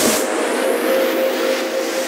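Techno track in a breakdown: the kick drum and bass drop out, leaving a held synth tone and a noise sweep filtered through the highs.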